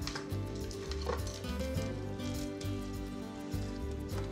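Background music with crisp rustling and light clicking of raw celery sticks being handled and pushed together on a platter, strongest near the start and about a second in.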